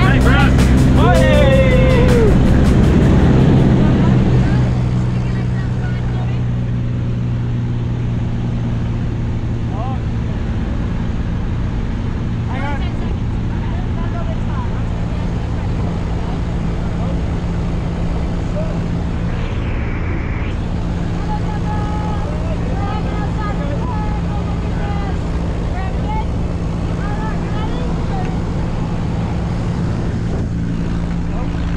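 Light aircraft's engine and propeller droning steadily inside the cabin, with faint voices over it. The drone drops a step in loudness about four seconds in and then holds even.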